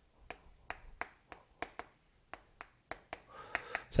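Chalk tapping on a blackboard as characters are written: about a dozen sharp, irregularly spaced taps.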